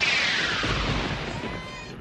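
A sudden crash-like sound effect with a hiss that falls in pitch over about a second and a low rumble beneath, fading out gradually.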